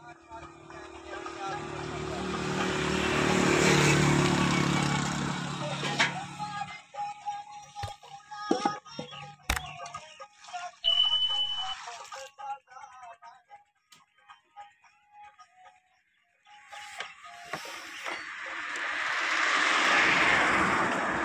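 Edited-in music and sound effects. A swelling whoosh with a low music drone fills the first six seconds or so. Clicks follow, then a short, high ding about eleven seconds in, and a second swelling whoosh near the end.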